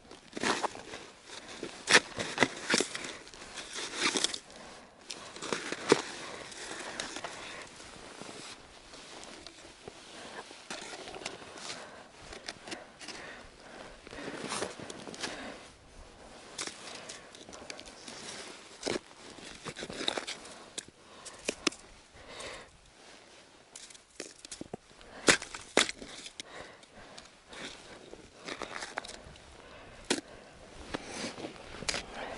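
Hands working a winter tip-up at an ice hole and hauling the fishing line up through it: irregular rustling, scraping and crackling with scattered sharp clicks.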